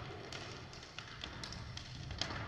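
Inline hockey sticks and puck clacking on a wooden sports-hall floor during play: several sharp, separate taps over a low, steady rumble.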